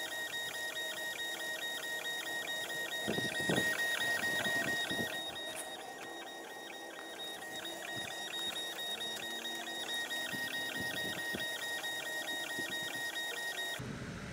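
Stepper motors of a Longer Ray5 10 W diode laser engraver whining as the gantry rasters a fill engraving on leather. The head reverses several times a second in an even rhythm, and the sound cuts off just before the end.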